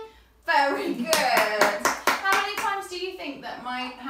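Quick hand clapping, about five claps a second, mixed with a voice, starting about half a second in.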